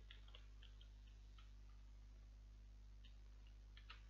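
Faint computer keyboard keystrokes: a quick run of taps in the first second or so and a few more near the end, over a steady low hum.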